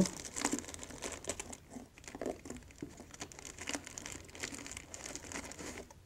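A plastic bag crinkling irregularly as it is handled.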